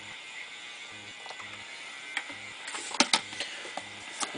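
Water poured from a plastic squeeze bottle onto coconut-fibre substrate in a plastic tub, a faint steady trickle and hiss, followed about three seconds in by a few sharp plastic clicks and knocks as the bottle is handled and set down.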